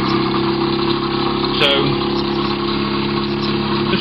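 Home-built pulse motor, a magnet rotor driven by coils switched by reed switches, running with a steady hum of several held tones.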